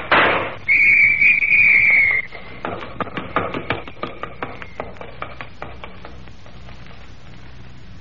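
Radio-drama sound effects: a gunshot, then a police whistle blown in one steady shrill blast of about a second and a half, then a run of quick footsteps that fade away.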